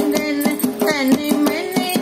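A woman singing a fagun geet, a Holi folk song, with rhythmic percussion accompanying her.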